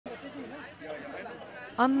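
Indistinct background chatter of several people talking; a louder narrating voice starts just before the end.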